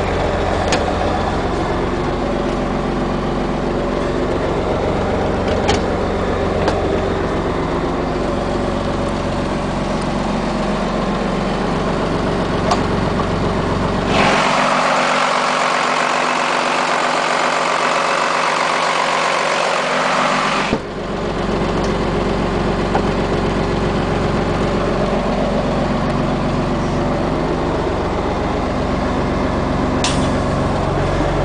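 A 5.9 L Cummins inline-six turbo diesel idling steadily with an even low hum. For about six seconds in the middle it is heard close up at the open engine compartment: louder and harsher, with the low hum gone. A few light clicks come in the first half.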